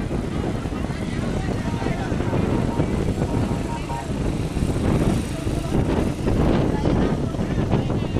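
Wind buffeting the microphone over the running engines of small motorcycles and the indistinct voices of a marching crowd.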